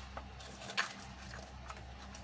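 A few faint taps and rustles from gloved hands handling a small cardboard box of chameleon flakes, over a steady low hum.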